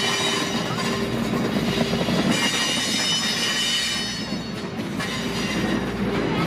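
Diesel-hauled passenger train passing close by, led by F-unit locomotives: a steady rumble of engine and wheels on the rails, with high steady tones that drop out briefly about two seconds in and fade about four seconds in.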